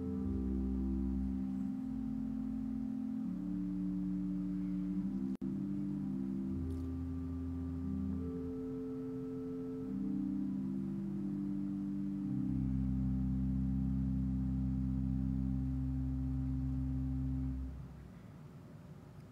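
Organ playing slow, sustained chords over held bass notes, the harmony shifting every second or two, stopping just before the end.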